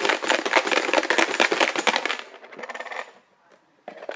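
Numbered raffle chips rattling inside a plastic box shaken by hand: a dense clatter for about two and a half seconds that thins out and stops.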